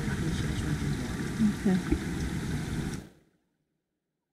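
Steady rushing of a mountain creek, with a few brief voice sounds about a second and a half in. The sound cuts off into silence about three seconds in.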